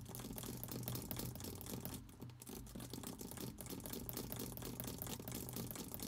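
Rapid, closely spaced keystrokes on a computer keyboard, clicking steadily while text is deleted, over a steady low electrical hum.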